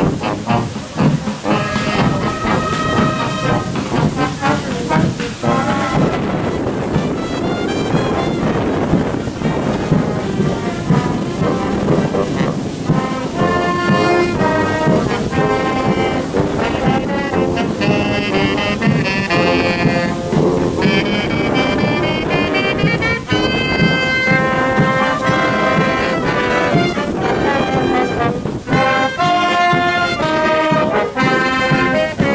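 Brass band with sousaphones, euphoniums and trumpets playing processional music while walking, over a heavy low rumble.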